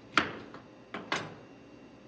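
A kitchen knife knocking sharply on a cutting board three times while cutting a lemon: one loud knock near the start, then two close together about a second in.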